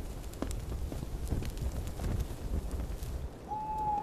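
Footsteps on hard ground: a scatter of irregular knocks over a low rumble, with a brief steady high tone near the end.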